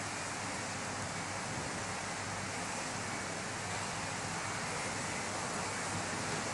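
Steady, even hiss of background noise with no distinct sound in it.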